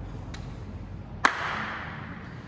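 A single sharp crack, like a slap or smack, about a second in, ringing briefly in a large room, with a fainter click shortly before it.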